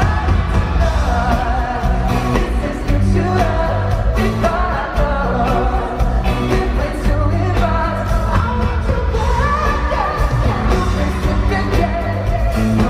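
A male pop singer singing live into a microphone while strumming an acoustic guitar, with band accompaniment and a strong bass.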